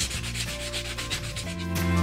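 Sanding block rubbed back and forth over the edges of an unfinished wood plaque, a quick run of scratchy strokes smoothing the rough edges.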